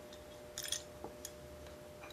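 Small metal clicks and clinks as a washer and nut are handled and fitted onto a bolt of a clutch Z-bar bracket: a short cluster about half a second in, then two single ticks, over a faint steady hum.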